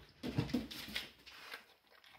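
A bull terrier making a short vocal sound, about a second long and loudest near its start, then fading off.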